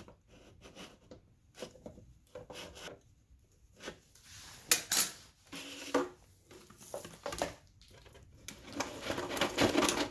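A metal spoon scraping and clicking against the thin plastic shell of a hollow 3D-printed skull, in scattered short strokes, with one sharper knock about five seconds in. Near the end comes a longer stretch of plastic rubbing.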